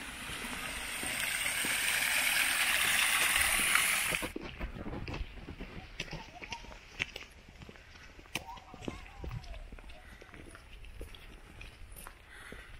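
Small rockery waterfall in a garden: running water splashing, growing louder over the first four seconds and then cut off abruptly. After that come footsteps on a paved path, heard as light ticks over faint outdoor background.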